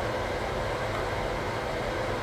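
Steady background noise of a small room, an even hiss with a low hum, in a pause between speech.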